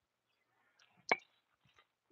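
A single sharp crack of a bat striking a ball off a batting tee, about a second in.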